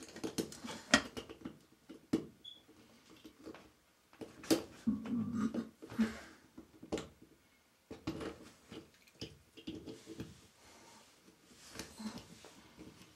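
Small plumbing fittings being handled and fitted together by hand: scattered clicks and light knocks of metal and plastic parts, with rustling of hands and clothing between them.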